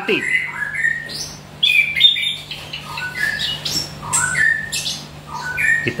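Chestnut-capped thrush (anis kembang) singing a run of short, varied whistled notes, many of them stepping up or down in pitch. The bird has only just come out of its moult and is already in full song.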